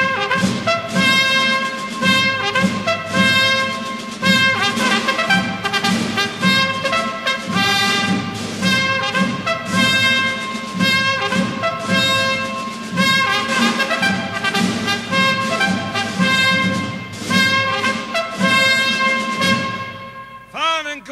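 Military brass band playing a march, trumpets and trombones over a steady beat of about two strokes a second.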